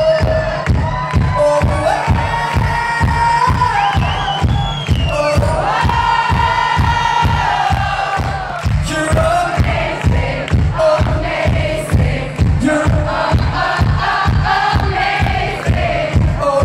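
Live pop band playing a dance beat, with a steady kick drum at about two beats a second and a sung melody over it. The crowd sings along.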